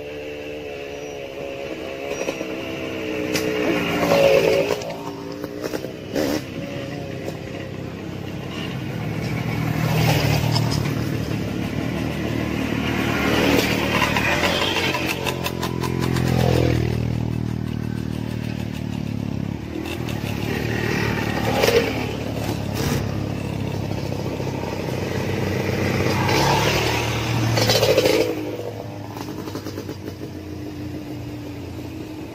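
Several dirt bikes ride past one after another, their engines rising and falling in pitch as each one comes up and goes by, with a drop in pitch about halfway through as one passes close.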